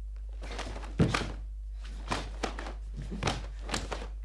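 Karate kata movements: bare feet stamping on a mat and the gi snapping with fast techniques, five or six sharp swishes and thuds, the heaviest thump about a second in. A steady low hum runs underneath.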